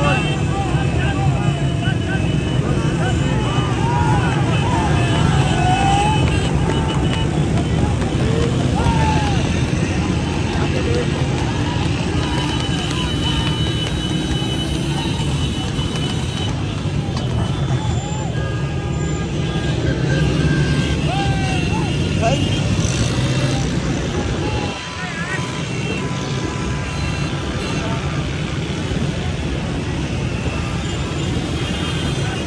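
Dense, continuous engine noise from a pack of motorcycles riding together, with men shouting and calling over it throughout. The noise drops briefly about 25 seconds in, then carries on.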